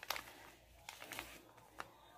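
Faint handling of gold laminated foil paper and a tape measure: a few soft, short crinkles and ticks, the clearest just at the start, others about a second in and near the end.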